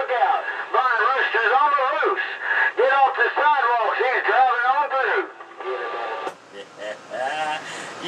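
A voice received over a CB radio, coming through the speaker thin and narrow-band, with words too garbled to make out. About five seconds in it drops to a quieter stretch with a faint steady tone, a sharp click and a weaker voice near the end.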